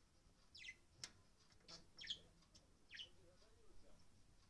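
Budgerigar giving three short, high 'pii' chirps that fall in pitch, about a second apart, with a couple of light clicks in between.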